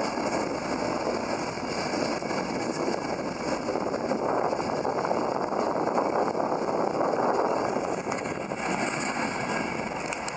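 Mark 4 coaches of an InterCity 225 train running past at speed: a steady rush of wheels on rails that swells slightly in the middle.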